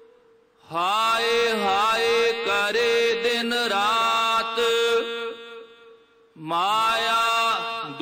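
Gurbani kirtan: Sikh devotional singing of a shabad, with sustained accompaniment underneath. It comes in two sung phrases; the voices glide and draw out syllables over steady held notes. There is a short break just before the first phrase and another about six seconds in.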